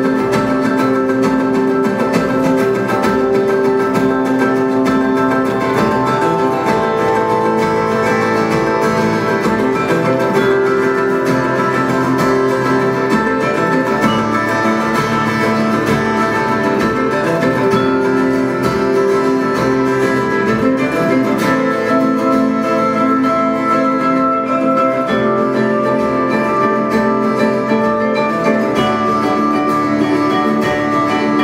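Live ensemble music: three acoustic guitars and three vibraphones playing a piece built on the chacarera, a traditional Argentinian folk rhythm, with quick plucked guitar lines over ringing vibraphone notes.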